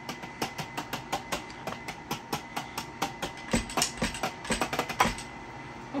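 Wooden drumsticks tapping on the pads and cymbal pads of a Donner electronic drum kit, a quick irregular run of dry clicks and thuds. The kit's drum sounds play only through the drummer's headphones, so only the sticks' own taps on the pads are heard. The taps stop about five seconds in.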